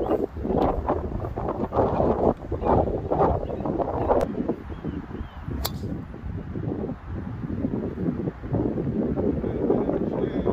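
Wind buffeting the microphone in gusts, with a single sharp crack a little past halfway as a golf driver strikes the ball off the tee.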